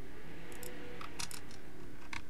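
A quick run of about six light clicks from a computer mouse, starting about half a second in, over a steady low room hum.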